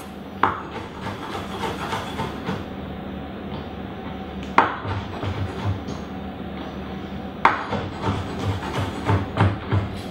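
Chef's knife chopping white mushrooms on a wooden cutting board: a few single sharp knocks, then two runs of quick chops, about three to four a second, one around the middle and one near the end.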